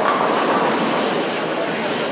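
Bowling ball striking the pins, a sudden crash right at the start, followed by the clattering rattle of falling pins over the bowling alley's steady rumble of balls and pins.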